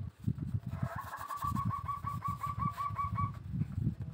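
A bird calling in the background: a rapid run of about a dozen short, repeated notes, about five a second, starting about a second in and stopping a little past three seconds. Underneath, soft knocks and rubbing of thin bamboo strips being woven by hand.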